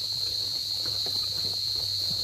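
Steady, high-pitched insect chorus droning without a break.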